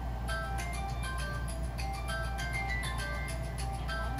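Tinkling electronic lullaby tune of short chiming notes, about three or four a second, from a baby toy, over a steady low hum.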